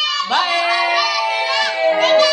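Music with a high singing voice holding long, drawn-out notes, with a short break and a fresh note about a quarter second in.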